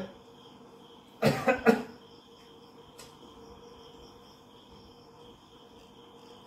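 A person coughs three times in quick succession, a little over a second in. A faint, steady high-pitched background tone runs underneath.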